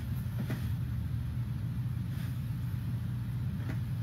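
Steady low hum and rumble with a couple of faint ticks.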